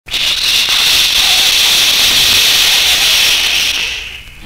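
Stylus riding the lead-in groove of a 45 rpm vinyl single: loud, steady surface hiss with faint crackle that fades away near the end, just before the music starts.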